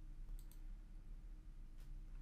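Faint computer mouse clicks, two close together about half a second in and another near the end, over a low steady hum.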